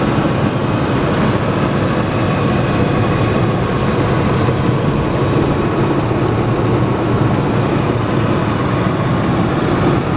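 2001 GMC Sonoma pickup's engine idling steadily, heard up close with the hood open.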